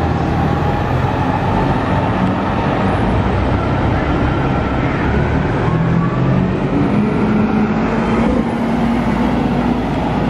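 City transit buses running through an intersection over steady street traffic: one bus pulls away, then a second turns close by and passes, its engine hum joined by a rising whine about halfway through as it accelerates.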